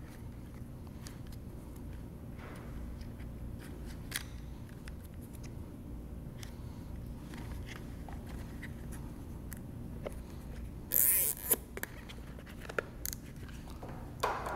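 A plastic zip tie ratcheting as it is pulled tight, heard as one short rasping burst about eleven seconds in. Before and after it come faint handling clicks over a low steady hum.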